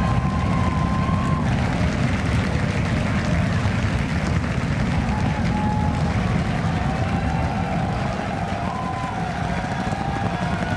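Super Heavy booster's 33 Raptor engines firing during ascent: a deep, steady rumble that fades a little toward the end.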